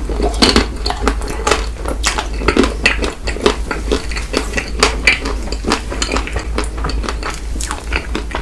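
Close-miked chewing of a mouthful of ice cream bar with a hard, crackly coating: a continuous run of small crunches and clicks, several a second.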